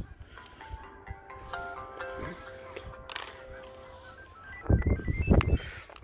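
Motorola Razr V3m flip phone playing a short electronic tune through its speaker: clear held notes, several sounding together, ending in a quick rising run of short beeps. About five seconds in, low handling knocks as the phones are moved.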